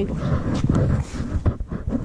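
Uneven low rumble of wind buffeting the camera's microphone, with no clear pitch.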